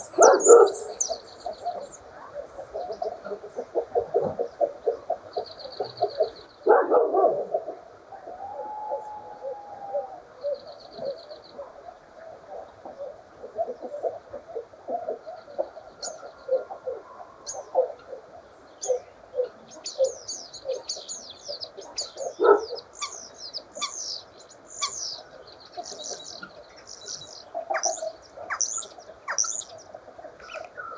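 Common starling singing a long, varied song of rapid clicks, rattles and gurgling notes with a brief whistle, broken by a few louder bursts, and higher chirping notes that grow denser in the second half.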